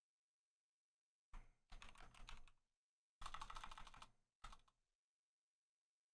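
Typing on a computer keyboard: three bursts of rapid key clicks, the first starting just over a second in, a second about three seconds in, and a short third one right after it.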